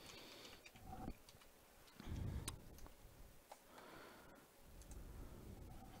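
Near silence: faint room tone with a few scattered soft clicks and a brief low rumble of handling about two seconds in.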